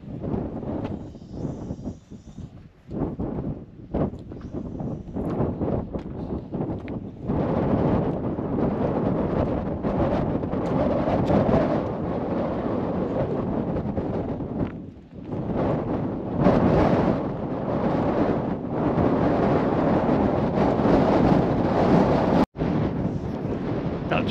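Strong, gusty mountain wind buffeting the camera's microphone: an uneven rushing rumble, patchy with a few brief knocks at first, then heavier and sustained from about seven seconds in, easing for a moment around the middle.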